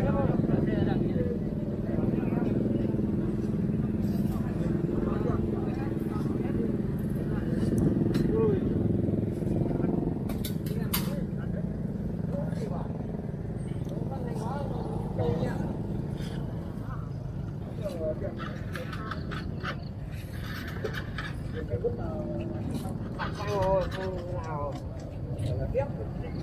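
A motorbike engine idling steadily, fading out about halfway through, with people's voices talking on and off and a few sharp clicks about ten seconds in.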